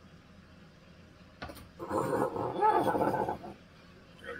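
A man's voice letting out a loud, throaty roar-like cry of about a second and a half, starting about two seconds in. Just before it there is a single light click.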